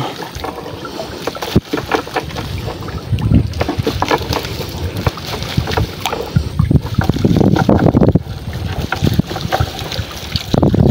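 Wet netting of a bubu naga shrimp trap being hauled hand over hand out of the water into a boat: water splashing and dripping off the net, with many small irregular knocks and rustles from the netting and its frame. Louder surges come about three and seven seconds in.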